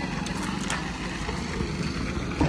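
Motorbikes and a scooter riding past: a steady engine and road hum.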